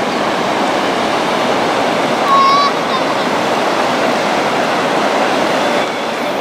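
Floodwater rushing steadily over a river weir and churning into white water below the drop. About two and a half seconds in there is one short, high call lasting under half a second.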